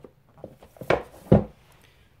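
Paperback books being slid into place and knocked upright on a wooden shelf: light rubbing and knocks, the loudest a dull thud about a second and a half in.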